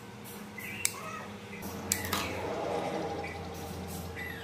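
Scissors snipping flower stems, two sharp snips about a second apart, with stems and leaves rustling as they are handled.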